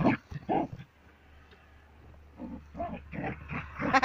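Border collie breathing hard in short, quick puffs, about four a second, in the second half, after a quieter stretch.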